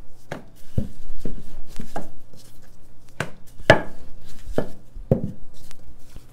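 Dough being rolled out with a rolling pin, which knocks against the work surface in a run of uneven knocks and thumps, about two a second.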